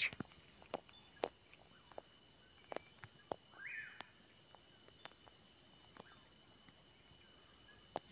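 Crickets and other night insects chirring steadily in a high-pitched band, with a few faint scattered clicks and one short higher tone about halfway through.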